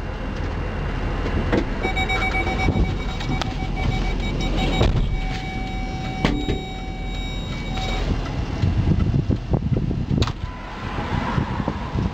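Inside a car, a low engine rumble runs throughout. From about two seconds in, a steady electronic warning tone from the car sounds for about six seconds with a few short breaks. Thumps and a sharp clunk follow near the end.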